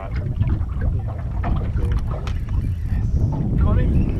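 Wind rumbling on the microphone aboard an open aluminium boat at sea, with a few light clicks and knocks.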